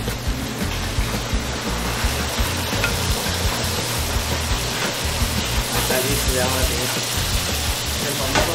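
Seafood sizzling in a hot stone molcajete as melted cheese sauce goes over it: a steady sizzling hiss.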